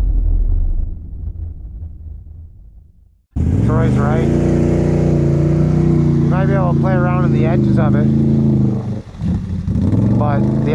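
A low throbbing intro sound fading out over about three seconds, then a sudden cut to an ATV engine idling steadily, with voices over it.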